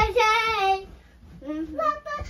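A young girl singing unaccompanied: one long held note that sags slightly in pitch through the first second, then after a short pause a new sung phrase starting near the end.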